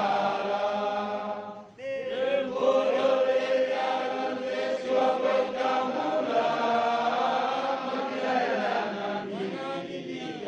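A large group of voices chanting together in unison, holding long drawn-out notes, with a brief break about two seconds in.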